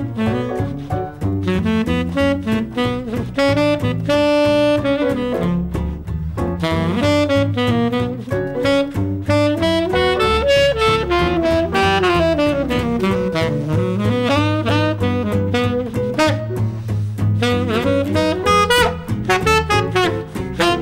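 Jazz instrumental break: a saxophone solo playing quick runs of notes that rise and fall, with one long held note about four seconds in, over a bass line and steady cymbal time.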